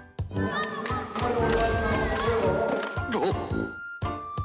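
Many voices shouting and cheering at once during a ssireum wrestling bout, over light background music. A falling sweep of sound comes near the end.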